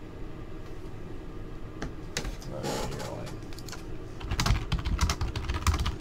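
Trading cards being handled on a tabletop. There is a short rustle about two and a half seconds in, then a quick run of light clicks and taps in the last two seconds as cards are set down and squared up.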